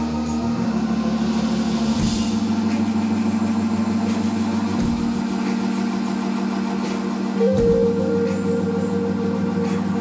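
A live band playing: long held low synth-bass notes that change every two to three seconds under a steady higher sustained tone, with electric guitar and keyboards, and little drumming.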